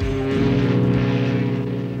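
Cruise ship's horn sounding one long, low, steady blast that starts about a third of a second in.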